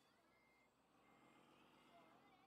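Faint electronic reversing beeps from an RC hydraulic wheel loader's sound module as the loader reverses: three short, even beeps on one pitch, about one every 0.7 seconds.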